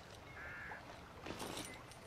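A single short, faint bird call about half a second in, a caw-like call, over quiet background ambience.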